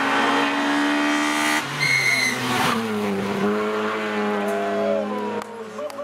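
Rally car engine running at high revs through a bend, with a brief high-pitched squeal about two seconds in. The engine note drops near three seconds in, holds steady, then fades near the end.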